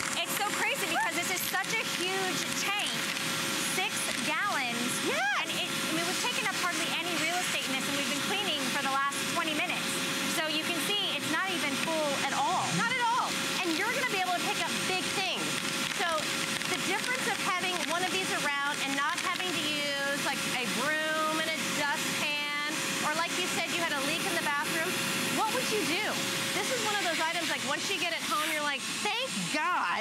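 Bissell Garage Pro wet/dry vacuum with a 12-amp motor running, its hose nozzle sucking up screws and sawdust from a wooden workbench. It makes a steady whine with rushing air, which drops away near the end. Women talk over it throughout.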